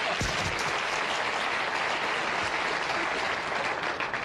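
Studio audience applauding, a steady, even clapping.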